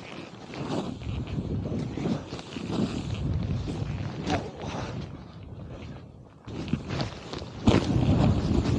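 Snowboard sliding and carving through soft snow: a rough rushing scrape that swells and fades with the turns, dropping away briefly just before the six-second mark and picking up again. Wind buffets the camera microphone throughout.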